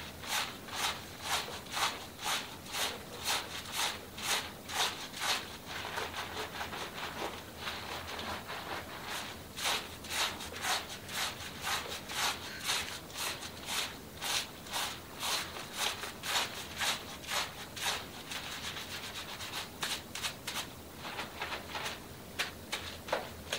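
Hands scrubbing a shampoo-lathered scalp and long hair: rubbing strokes through the lather in a steady rhythm of about two a second, easing off briefly about seven seconds in.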